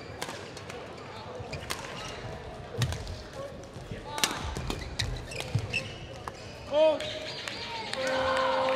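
Badminton rackets striking a shuttlecock in a doubles rally, sharp hits about a second apart, with footwork on the court floor in a large hall. A brief loud high-pitched sound comes near the end, as the rally ends.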